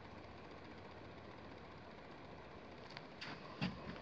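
Faint steady mechanical hum, with a sharp click about three seconds in and a few short, soft handling noises near the end.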